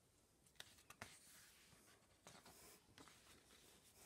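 Faint rustling and a few soft ticks of a paper page in a picture book being turned by hand and smoothed flat.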